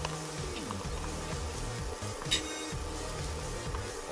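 Background music plays steadily, with one brief clatter about halfway through, from tongs against the pan as diced onion is dropped in.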